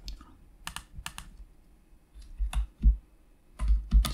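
A few separate computer keyboard key presses, spaced irregularly, with a couple of dull low thumps a little past the middle.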